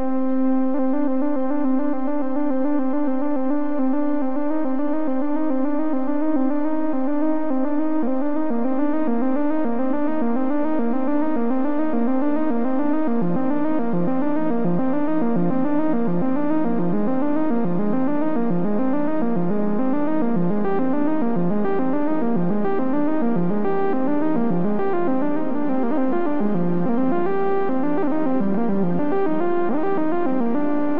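VCV Rack software modular synthesizer playing a stepped diatonic sequence on a simple subtractive voice (oscillator, filter, VCA) through a shimmer reverb. It opens on one held note, then the notes step quickly from pitch to pitch. The pattern grows busier, taking in lower notes from about halfway.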